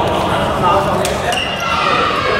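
Indistinct voices of players echoing in a large indoor sports hall, with a sharp click about a second in and a brief high squeak just after it.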